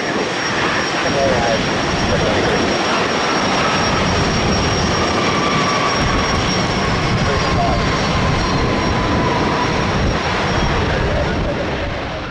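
Boeing 737-800's CFM56-7B jet engines roaring steadily as the airliner rolls out on the runway just after touchdown, with a whine that slowly falls in pitch as it slows. The roar begins to fade near the end.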